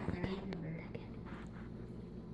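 Faint, indistinct voices murmuring or whispering in the background, with a couple of light clicks near the start.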